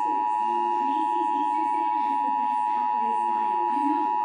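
Emergency Alert System attention tone: one steady, unbroken electronic tone held at a constant pitch and level. It signals that a spoken emergency message is about to follow, here a severe thunderstorm watch.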